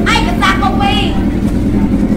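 Honda motorcycle engine idling steadily, with voices talking over it in the first second.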